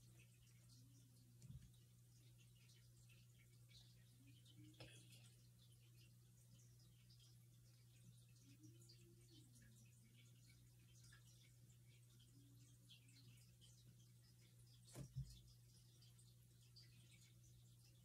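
Near silence: room tone with a steady low hum and a few faint, soft clicks, about three in all, the loudest near the end.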